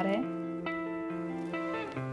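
Background instrumental music with held notes that change a couple of times.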